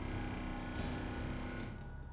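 A steady drone of several held tones under a high hiss. The hiss fades out shortly before the end.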